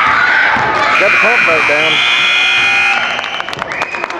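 Gymnasium scoreboard buzzer sounding a steady tone over crowd and children's voices, starting about a second in and cutting off suddenly near the three-second mark. Sharp knocks follow in the last second.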